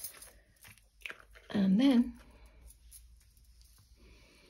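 A short vocal sound, like a hum with a rising then falling pitch, about one and a half seconds in, with a few faint clicks of handling around it.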